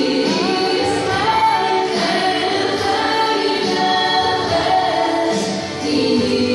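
Christian choral worship music: a choir singing held notes in a steady, full arrangement.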